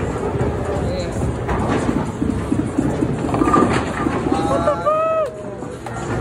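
Bowling ball rolling down a wooden lane with a steady low rumble, over the clatter of the alley. Near the end a voice gives a drawn-out exclamation.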